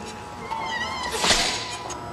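A metal door with a push-bar handle swinging shut, its hinge or closer giving a wavering high squeal, with a loud thud as it closes a little past halfway.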